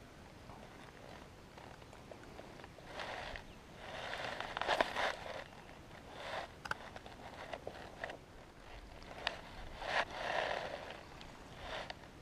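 Irregular rustling and crackling as a spinning reel is cranked and a lure is dragged in through bankside grass and weeds. It comes in bursts, loudest about four to five seconds in and again about ten seconds in, with a few sharp clicks.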